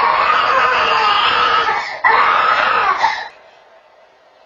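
A toddler screaming: two long, loud cries, the first about two seconds, the second breaking off a little after three seconds in.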